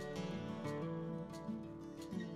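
Background music: a plucked acoustic guitar playing a melody of changing notes.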